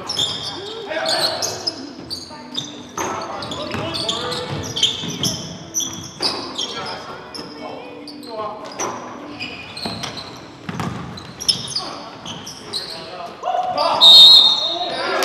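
Live indoor basketball game sounds in a gym: a basketball bouncing on the hardwood court in repeated sharp thuds, short high sneaker squeaks, and players' voices calling out, all echoing in the hall.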